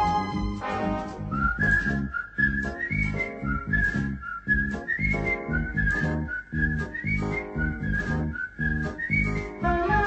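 Background music: a whistled melody over a steady, bouncy beat with bass.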